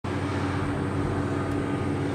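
A steady mechanical hum with a constant low tone.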